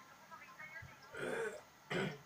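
A person clearing their throat: a rough noisy burst about a second in and a second sharp one near the end.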